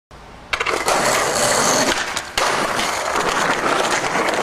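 Skateboard wheels rolling loudly over a concrete floor close to the microphone, starting about half a second in, with a brief drop a little past two seconds.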